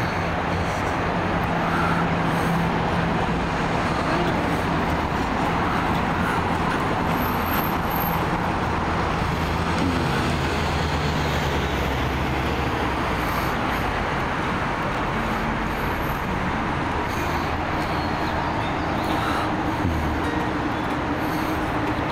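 Steady street traffic and vehicle engine noise, with a low engine hum that shifts down and then fades about halfway through.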